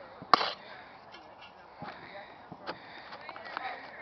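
A shovel striking and scraping dirt as a hole is filled in: one loud sharp strike about a third of a second in, then fainter knocks and scrapes.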